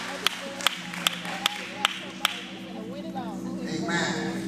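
Scattered audience handclaps, about two or three a second, dying away after a couple of seconds, over a held low keyboard chord and faint crowd murmur.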